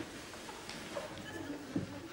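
Scattered, subdued chuckling from a studio audience in a quiet hall, with a brief laugh near the end.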